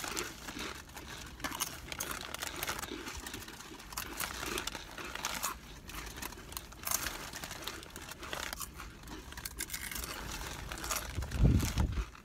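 Doritos Dinamita chip bags crinkling as several people reach into them, with rolled tortilla chips being crunched. Near the end, a loud low rumble of wind buffeting the microphone.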